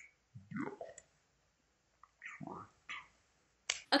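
Soft wordless voice sounds from a person between sentences: a short falling hum early on, a few brief murmurs, and small clicks.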